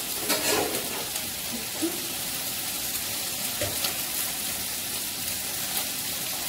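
Steady sizzling of food frying on the stove, with a few light clinks of steel kitchenware.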